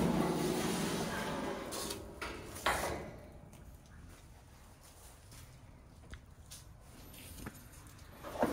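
Stainless steel griddle hard cover being lifted and hung by its hooks on the back of the griddle: a metal scraping sound that fades over the first two seconds, then a single clank near three seconds in as the hood settles, followed by quiet with a few faint clicks.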